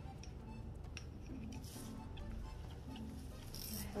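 Faint background music with a few soft clicks from a curling iron and comb being handled.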